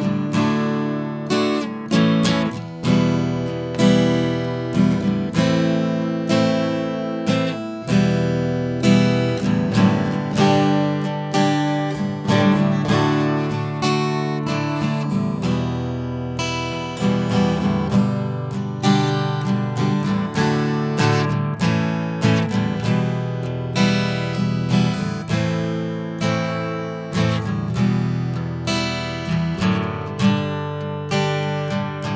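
Acoustic guitar playing an open-chord verse progression (E minor, G, D, A) in standard tuning, the chords struck in a steady rhythm, each ringing and then decaying.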